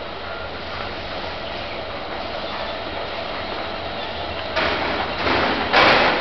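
Metro-station escalator running with a steady mechanical rumble and low hum. Near the end come three louder bursts of noise, the last the loudest.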